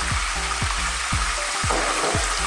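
Raw chicken pieces sizzling in hot oil in a pot, a steady frying hiss.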